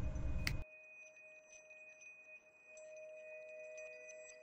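A lit metal lighter's flame gives a steady noise that ends with a sharp metallic click about half a second in. It is followed by soft, sustained chime-like tones of ambient music.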